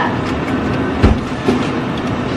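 Electric food steamer running, its water boiling hard under the foil-covered pan with a steady rumble and light rattle. A low thump about a second in.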